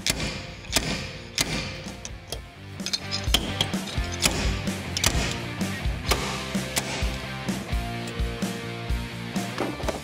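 Slide hammer gripping copper studs welded into a dent in a steel truck hood, knocking sharply over and over, roughly every half second, to jar the low spot up. Background music plays throughout.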